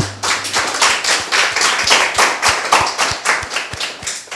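Audience applauding, a dense patter of many hand claps that dies away near the end.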